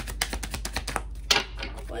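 A tarot deck being shuffled by hand: a rapid run of soft clicks as the cards slide and flick against each other, with one louder snap a little past a second in.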